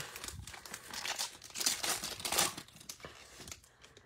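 Foil wrapper of a 2020 Donruss Optic football card pack being torn open and crinkled in the hands: irregular rustling and ripping, thinning out near the end.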